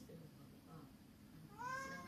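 A cat's single short meow about one and a half seconds in, rising in pitch and then levelling off, heard faintly over quiet room tone.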